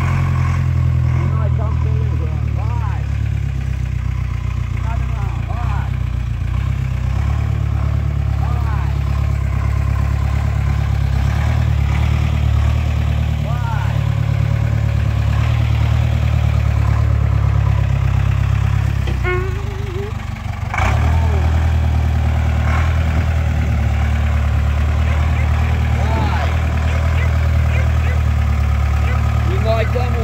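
Ford flatbed truck's engine idling steadily, with a single sharp knock about two-thirds of the way through.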